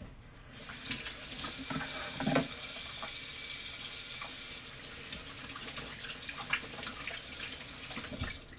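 Water running from a tap into a sink, the flow easing off about halfway through, with a couple of dull knocks about two seconds in.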